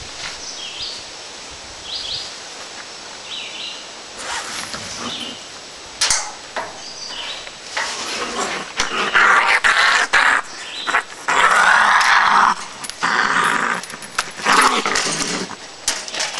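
A raccoon growling and hissing in loud, harsh bursts from about halfway through; it is mad at being caught on a catch pole. Sharp metal knocks come before the growling starts.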